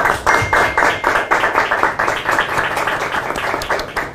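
A small group of people clapping: quick, dense, steady applause that starts suddenly and dies away at the end.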